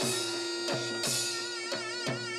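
Korean traditional dance music: a shrill reed-pipe melody with wide vibrato over a steady held drone, with drum strikes about every half second to second.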